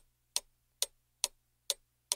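Steady, even ticking like a clock, about two sharp ticks a second, with nothing else between the ticks.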